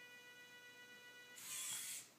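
Servo motors of a 3D-printed robotic hand: a faint steady high whine, then a louder rush of motor and gear noise for about half a second near the end as the fingers pull closed.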